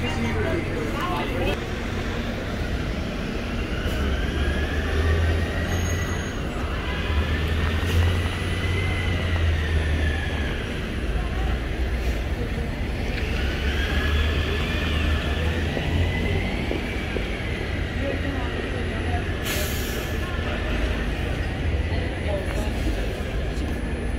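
London double-decker buses running in street traffic: a low engine rumble, with a whine that rises and falls several times as the buses pull away and slow. A short burst of hiss comes about twenty seconds in.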